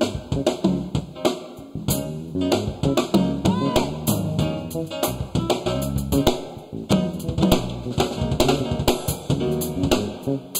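Live R&B band playing an instrumental passage: drum kit with kick, snare and rim hits keeping a busy groove under bass, guitar and keys.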